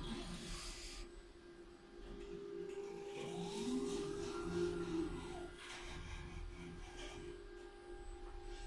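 Schindler lift doors closing: a motor whine that rises in pitch and falls again over about three seconds, over a steady low hum.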